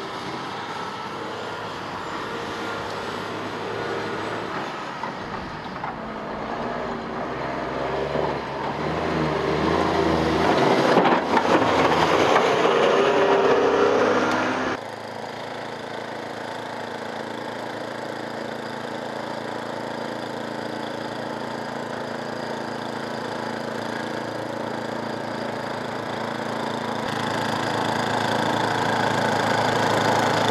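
A snowplow truck's diesel engine runs as it pushes snow, growing louder to a peak about 11 to 14 seconds in. After a sudden cut, a walk-behind two-stage snowblower's small engine runs steadily while it clears snow, getting slightly louder near the end.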